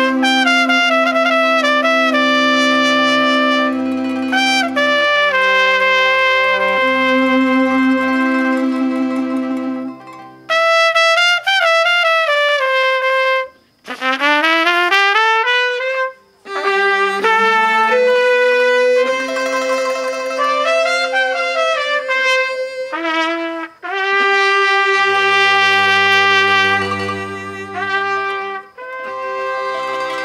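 Trumpet playing a slow melody over a small string ensemble, with cello and violin holding long notes beneath it. The low held notes drop out for a few seconds about ten seconds in, and a rising slide in pitch follows shortly after.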